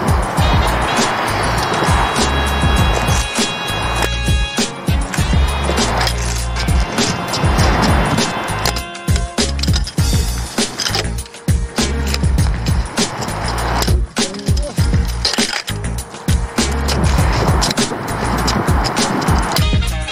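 Freeline skates rolling over asphalt and a ramp in several passes that swell and fade, with sharp clacks as the skates strike and land. Background music plays throughout.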